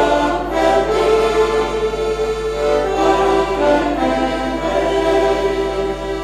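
Hohner Piccola diatonic button accordion played solo: a folk tune of held chords with the melody moving above them.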